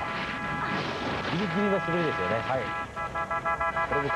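TV sports broadcast audio: a voice speaking briefly around the middle over background music with a held, steady tone, and a rush of noise in the first second.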